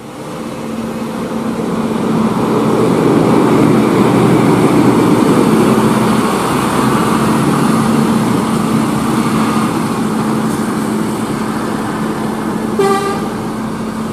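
Scania K310 coach passing close by. Its diesel engine and road noise build over the first few seconds, are loudest in the middle, then ease slowly as it pulls away with motorbikes behind it. A short horn toot comes near the end.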